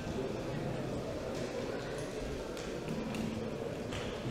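Low, steady murmur of indistinct voices in a hall, with no clear words.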